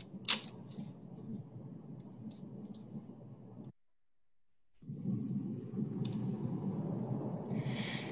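Quiet room tone with a few light clicks and handling noises. About halfway through, the sound cuts out completely for about a second. Near the end comes a short breath intake before a cappella singing.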